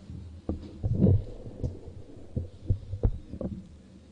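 A run of irregular low thumps, loudest about a second in and again near three seconds.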